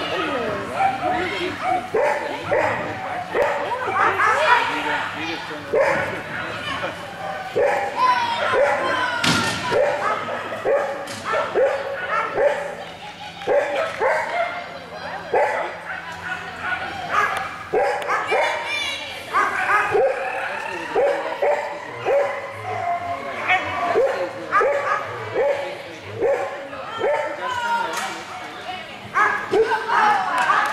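A dog barking over and over in short, falling yips, about one to two a second, with voices behind. There is a single sharp knock about nine seconds in.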